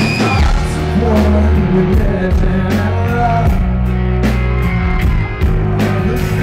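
Live rock band with a male lead vocalist singing over electric guitar, bass and drums, the cymbals struck about twice a second.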